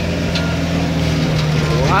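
Vehicle engine running steadily with road noise, heard from inside the cabin while driving on a winding forest road; a few faint rattles. A voice asks a question at the very end.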